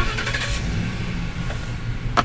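Steady low rumble of a running vehicle engine, with an even hiss of road or traffic noise over it.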